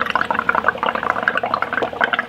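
Air blown through a drinking straw into a cup of soapy paint mix (dish soap, sugar, water and acrylic paint), bubbling and gurgling rapidly and unevenly as the foam rises.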